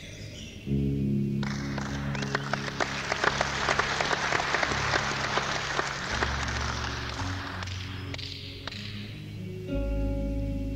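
Audience applause swells up about a second and a half in and dies away near the end, while the band keeps playing low sustained notes underneath.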